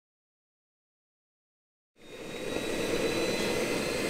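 Silence for about two seconds, then the Jakadofsky Pro 5000 model turbine of a large-scale Bell 412 RC helicopter fades in, running steadily with a high whine.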